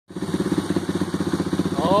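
1994 Suzuki DR350SE's single-cylinder four-stroke engine idling steadily with an even, fast thumping beat, on its first start-up after a rebuild. A man's voice cheers over it near the end.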